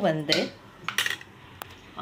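A metal spoon knocking against the side of a metal cooking pot as potato pieces are mixed, giving a few short, sharp clinks: one about a second in and another near the end.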